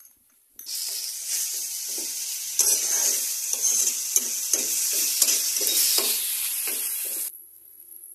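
Onions and ground spices sizzling in hot oil in a non-stick frying pan while a metal spatula stirs and scrapes them in repeated strokes, a little over two a second. The sizzle starts about half a second in and cuts off suddenly near the end.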